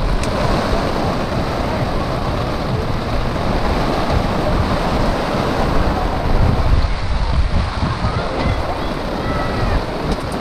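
Heavy rain pouring onto a fabric canopy and wet pavement, a steady rushing hiss, with uneven low buffeting of wind on the microphone.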